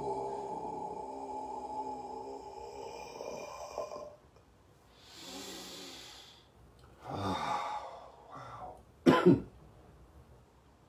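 A man's long, low, voiced exhale as he bends forward pressing under his rib cage, fading out about four seconds in. It is followed by a breathy inhale, a sighing exhale, and a sharp cough near the end, the loudest sound.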